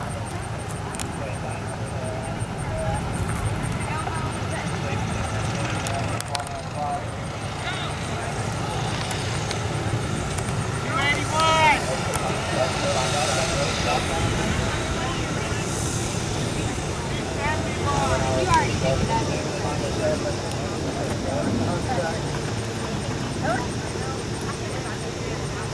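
Steady outdoor background noise with faint voices talking at a distance, clearest a little before the middle and again later on.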